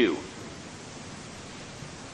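Steady, even hiss of the recording's background noise, with the tail of a man's spoken word right at the start.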